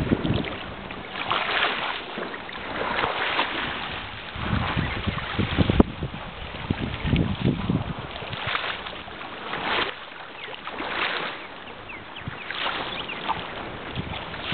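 Gusty wind buffeting the camera microphone, rising and falling in uneven gusts, with a single sharp click about six seconds in.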